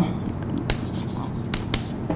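Chalk writing on a blackboard: a few sharp taps and light scrapes as letters go on, several of them close together in the second half, over a steady low room hum.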